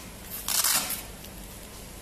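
Hook-and-loop fastener of an upper-arm blood pressure cuff rasping once, about half a second in, as the cuff is wrapped around the arm and pressed shut.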